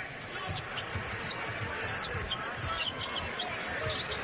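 A basketball being dribbled on a hardwood court, repeated low thumps, with short sneaker squeaks and arena crowd noise behind.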